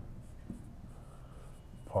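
Marker pen writing on a whiteboard: faint, broken scratching strokes as a word is written out.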